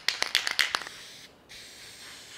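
Aerosol can of spray lacquer rattling as it is shaken, then spraying: a steady hiss from about a second in, stopping briefly twice between passes.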